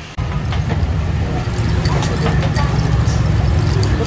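Street-side eatery ambience: a steady low traffic rumble under murmured chatter, with short clinks of spoons against drinking glasses.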